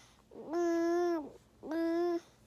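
Two drawn-out vocal sounds, each held on one steady pitch: the first lasts nearly a second, and a shorter one comes near the end.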